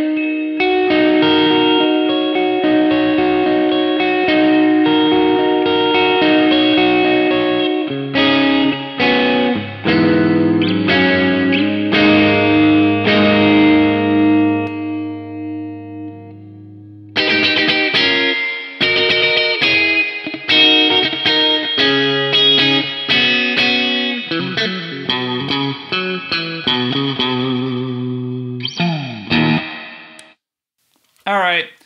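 Electric guitar played through the Hotone Mojo Attack amp pedal's clean channel with its onboard reverb switched on: ringing chords and single notes. About halfway through, a held chord rings out and fades almost to nothing before the playing starts again, stopping just before the end.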